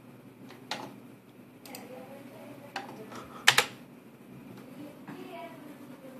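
Computer clicks: about five short, sharp clicks in the first four seconds, the loudest a quick double click about three and a half seconds in. A faint steady hum sits underneath.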